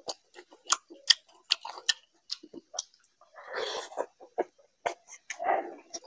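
Close-miked wet chewing of a mouthful of mughlai paratha: quick lip smacks and mouth clicks, with two longer, noisier stretches of mouth sound about three and a half and five and a half seconds in.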